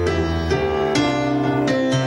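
Grand piano playing chords that are struck and held, with a new chord coming in roughly every half second.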